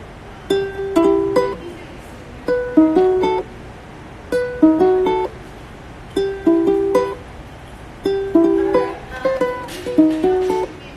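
Ukulele playing a chord progression in short picked phrases, each about a second long and starting roughly every two seconds, with brief pauses between them.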